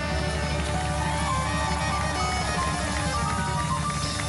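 Live band playing an Arabic pop song without vocals: a steady, busy percussion rhythm under a melody line after the singing stops at the start.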